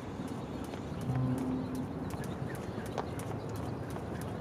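A jump rope slapping asphalt in a steady rhythm of sharp clicks as the man skips.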